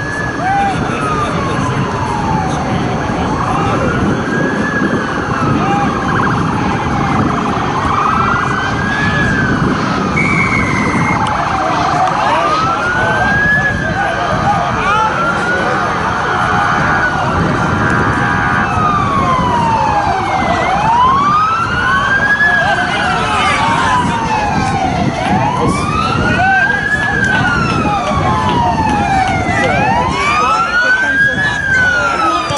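Emergency vehicle siren wailing in slow rising and falling sweeps, about one every four and a half seconds. From about two-thirds of the way in, a second wailing siren overlaps it.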